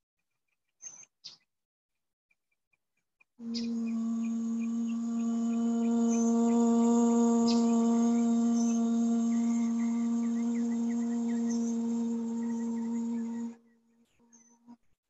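A woman's voice holding one long, steady sung or hummed note, toning at a single unwavering pitch for about ten seconds, starting a few seconds in and cutting off near the end.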